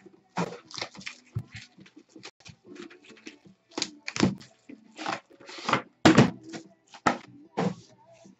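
Lacquered wooden card-box cases being handled and stacked on a desk: a series of irregular knocks and clicks of wood against wood and the desktop, with the clack of their metal hinges and latches.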